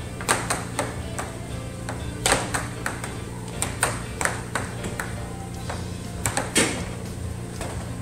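Air hockey mallets and puck clacking in a rally on an air table: a run of sharp, irregular knocks, loudest about two and six and a half seconds in.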